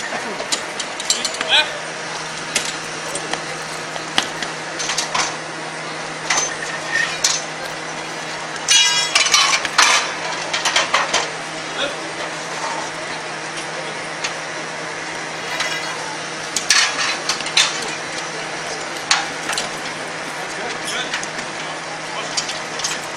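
Metal parts and tools clinking and knocking at an irregular pace while a 1951 Jeep is bolted together by hand, with a fast rattling run of clicks about nine seconds in and a steady low hum from about two seconds in.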